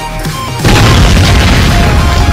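A sudden loud boom about two-thirds of a second in: a hand grenade bursting under a red-hot hydraulic press platen. The noisy blast lasts over a second, with electronic music underneath.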